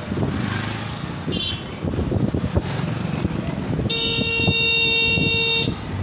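A vehicle horn sounds once about four seconds in, a steady single note held for nearly two seconds. Underneath runs the engine, tyre and wind noise of a moving two-wheeler in town traffic.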